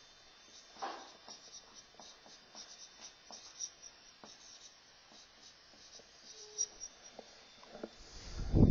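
Marker pen writing on a whiteboard: faint, irregular squeaks and taps of short pen strokes.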